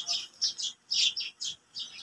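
Small birds chirping, a quick string of short high chirps, several a second.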